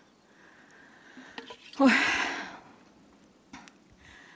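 A woman lets out a short, loud breathy sigh with a voiced 'nu' about two seconds in, fading over about half a second; the rest is quiet.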